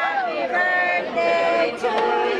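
A small group of people singing a birthday song together, unaccompanied, holding and sliding between sustained notes.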